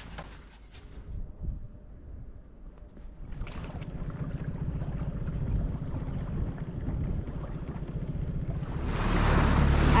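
A small outboard motor runs steadily on the water with a low, evenly pulsing drone, starting about three seconds in. Near the end, wind rushes loudly across the microphone.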